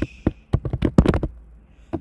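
Keystrokes on a computer keyboard typing an email address: a quick run of about ten key clicks in the first second or so, then a pause.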